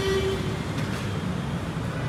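Steady background noise of road traffic, a low rumble with a short steady tone, like a horn, in the first half second.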